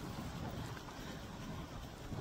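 Sled dogs' feet pattering on snow as the team pulls the sled, heard under a quiet, steady hiss.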